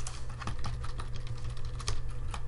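Computer keyboard being typed on: a scattering of short key clicks, the loudest near the end, over a steady low hum.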